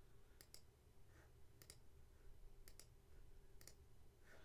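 Four faint computer-mouse clicks, each a quick press-and-release double tick, spaced about a second apart, over otherwise quiet room tone.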